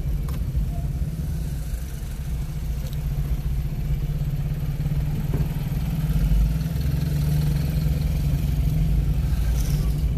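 Car engine and road noise heard from inside the cabin while driving slowly: a steady low rumble.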